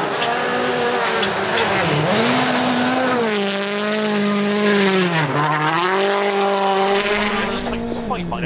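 Hyundai i20 Coupe WRC rally car's turbocharged 1.6-litre four-cylinder engine running at high revs. The pitch drops sharply about two seconds in and again about five seconds in, then climbs back each time as the revs fall and build between gears and corners.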